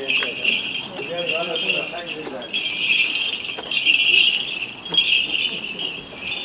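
Small metal bells jingling in repeated shakes, roughly once a second, with people's voices underneath.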